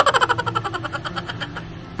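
A rapid rattling buzz with an engine-like tone, about a dozen pulses a second, fading and slowing toward the end.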